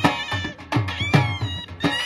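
Dhol drums and shehnai playing Saraiki folk music. The reed pipes carry a wavering melody over drum strokes whose deep boom drops in pitch after each hit.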